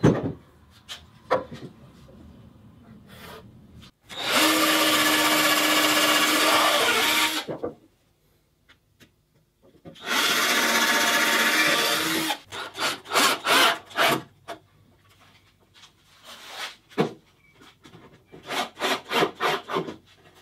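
Cordless drill running into wood twice, about three seconds then about two seconds, each at a steady motor pitch, followed by a string of quick clicks and knocks.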